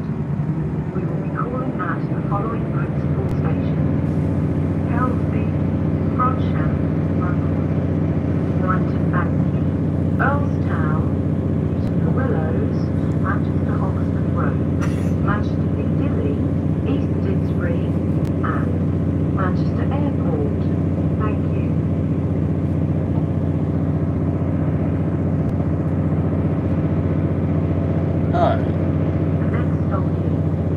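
Train running, heard inside the passenger carriage: a steady low drone of several held tones that builds over the first few seconds as the train gathers speed, then runs evenly. Passengers' voices murmur faintly in the background.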